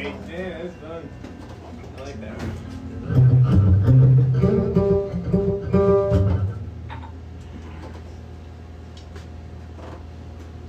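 Low plucked string notes played for a few seconds, from about three seconds in until about six and a half seconds in, over a steady low hum.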